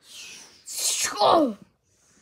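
A child's voice making exaggerated breathy sighs and groans: a soft exhale, then a louder one about two-thirds of a second in whose pitch slides downward.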